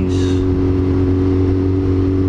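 Yamaha R6 sports bike's inline-four engine running at a steady cruising speed, its note holding one pitch, with wind and road noise heard from the rider's camera.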